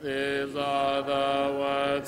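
Congregation singing a slow hymn a cappella, a new phrase beginning on long held notes that step gently from one pitch to the next.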